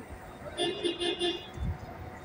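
A vehicle horn sounding a quick run of short toots, starting about half a second in and lasting under a second, over a low background rumble.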